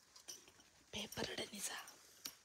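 A low, whispered voice for about a second, starting halfway through.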